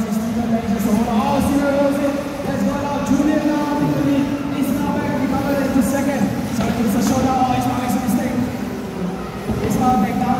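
Indistinct voices talking without pause, with no clear words.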